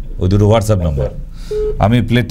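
Talk on a phone-in call, broken by one short steady telephone beep about one and a half seconds in.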